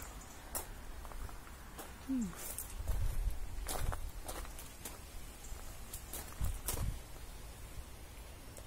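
Pruning shears cutting persimmon stems: a scatter of sharp clicks among rustling leaves, with a few low thumps.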